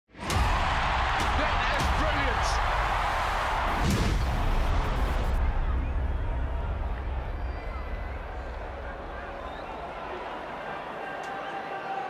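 Produced intro sting for about the first five seconds: a heavy low rumble with several sharp hits and a whoosh. It then gives way to the steady murmur of a rugby stadium crowd as a conversion kick is lined up.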